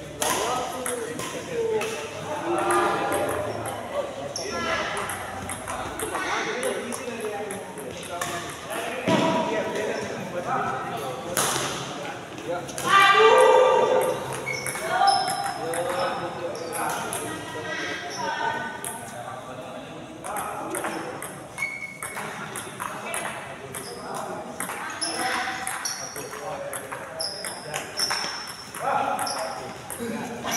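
Badminton doubles rally in a large hall: rackets hit the shuttlecock with sharp cracks and shoes squeak in short high chirps on the court. Players' voices call out throughout, loudest a little before halfway.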